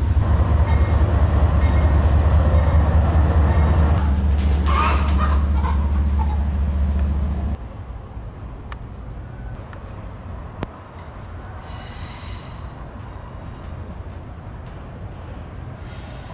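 A 6S freestyle FPV quadcopter's motors and propellers heard on board in flight: a loud, steady low rumble with wind buffeting. It cuts off suddenly about seven and a half seconds in, leaving quiet outdoor background with one faint click.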